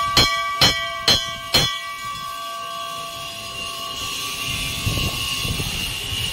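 Large brass temple bell rung by hand, its clapper striking about twice a second. Four strokes in the first two seconds, then the bell's ring dies away over the next few seconds.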